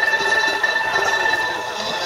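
Pipa music, one long held high note over other sustained notes, fading toward the end.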